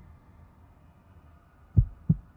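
Heartbeat sound effect: a low, dull thump near the end, part of a slow double-beat pattern, over a faint low hum.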